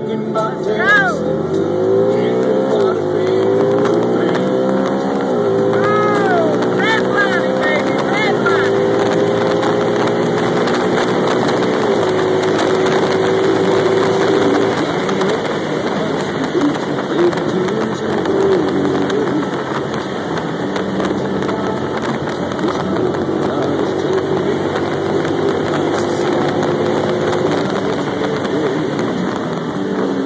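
Vehicle engine accelerating through the gears. Its pitch climbs and drops back at each shift three times over the first eight seconds or so, then it runs steady at cruising speed.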